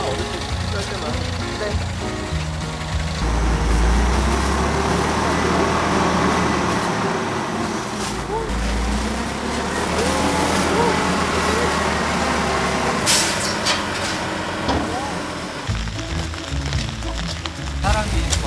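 Garbage compactor truck's engine running and revving up under hydraulic load about three seconds in, as the tailgate lifts and the load of bagged leaves is pushed out. A short hiss comes about thirteen seconds in.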